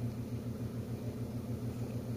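A steady low hum, like a running motor or appliance, with no change in level.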